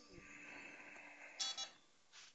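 A faint, long breath drawn in close to a headset microphone. It ends about a second and a half in with a short, louder noise.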